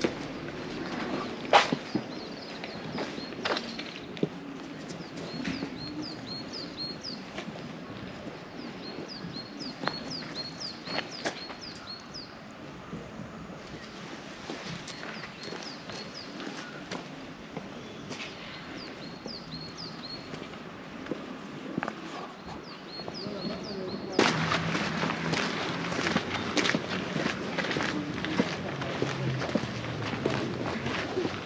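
Outdoor ambience: a bird repeats short, high chirps in quick runs over the crunch of footsteps on gravel and a few sharp clicks. Near the end it changes suddenly to a louder, busier hubbub of people walking and talking.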